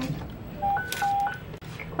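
Electronic dispatch alert tone: short beeps alternating between a lower and a higher pitch, low-high-low-high, lasting under a second. It is the kind of alert sent ahead of a fire-rescue radio dispatch.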